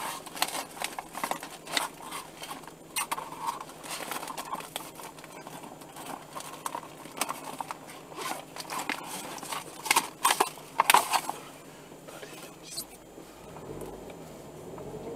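Irregular clicks and crackles mixed with muffled, voice-like sounds, heard inside a stopped car; the loudest cluster comes about ten to eleven seconds in, and it quietens over the last two seconds.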